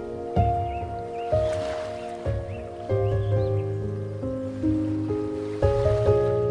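Slow, gentle solo piano music playing single notes and soft chords over the continuous wash of ocean waves. Several short, high bird calls rise and fall over the first half.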